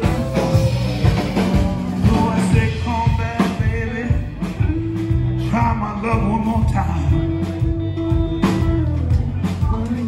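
Live rock band playing: electric guitars holding notes over a steady drum beat.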